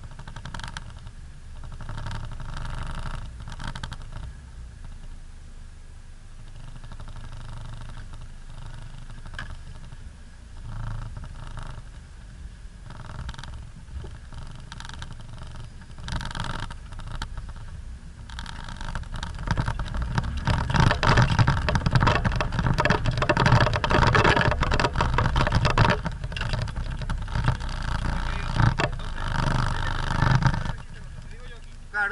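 Off-road 4x4's engine running at low revs in the cabin, then from about 18 seconds in working harder and much louder as it climbs a steep dirt slope, with the cabin and body rattling and knocking over the bumps.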